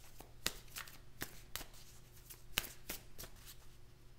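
A tarot deck being shuffled by hand: a run of about eight sharp card snaps at irregular intervals, with a soft rustle of cards between them, dying away near the end.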